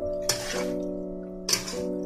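Background music: held chords with a soft swishing percussion stroke twice.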